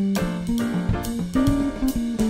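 Electric bass guitar playing a jazz line over a backing track of drums and keyboard, with regular drum and cymbal hits.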